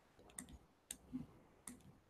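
Near silence broken by four faint, short clicks spaced through the two seconds: a computer mouse clicking as the on-screen drawing tool is used.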